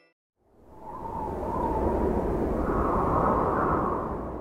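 A rushing, wind-like whoosh sound effect that fades in about half a second in and then holds steady, with a faint whistling band in it that drifts slightly higher toward the end.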